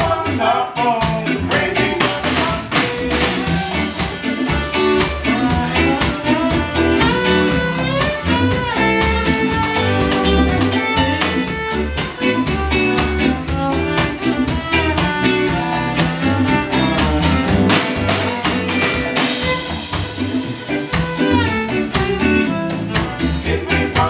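A live band playing a reggae-flavoured song, with a fiddle carrying the melody over electric guitars, bass, drum kit and hand percussion.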